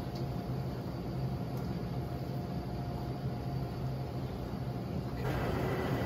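Steady low hum of a commercial kitchen's ventilation, with a wider rushing noise rising about five seconds in.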